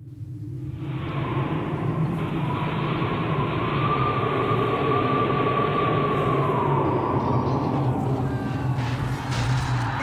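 A rumbling, hissing sound-effect drone from an audio drama fades in over the first second and holds steady, with a faint high whine that slides down about seven seconds in.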